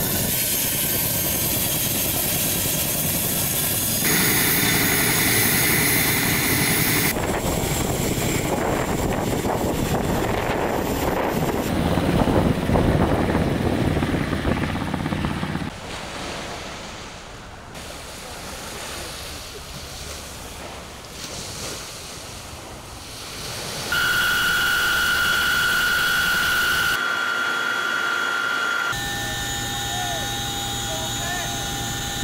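Military search-and-rescue helicopters running across several cut shots: the turbines and tandem rotors of an HH-47 Chinook turning on the ground, then an HH-60 in flight. The sound drops to a quieter stretch in the middle, then returns loud with a steady high whine for a few seconds near the end.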